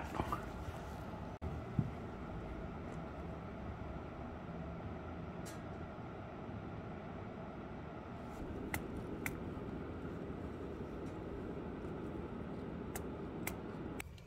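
Low, steady room noise with a few faint, sharp clicks scattered through it.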